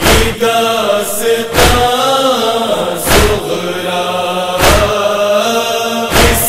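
Male voices chanting a nauha, the Urdu mourning lament, in unison, with a sharp collective chest-beat (sina zani) about every second and a half, four beats in all.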